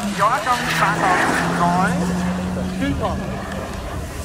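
People talking close by over a car engine droning at a steady pitch in the distance; the engine note steps down once right at the start.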